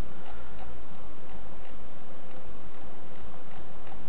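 Faint, irregular ticks of a small screwdriver working out the single screw that holds a laptop-style wireless card down. A steady hiss runs underneath.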